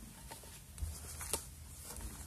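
Faint handling noises: a LiPo battery pack and its charging lead being moved about by hand, with a few soft clicks.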